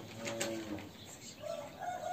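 A rooster crowing faintly in the background during a pause. It is a long held call that begins near the end, with fainter bird calls before it.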